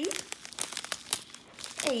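Small clear plastic bags of square diamond-painting drills crinkling as they are handled and shuffled, an irregular run of crackles.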